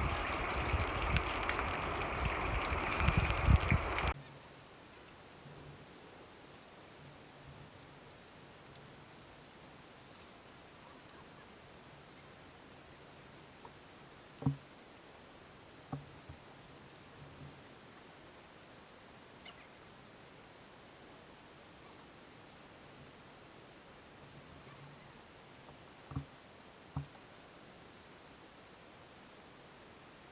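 Storm wind buffeting the microphone, with rain, loud for the first four seconds and then cut off abruptly. After that only a faint steady hiss remains, with a few soft knocks.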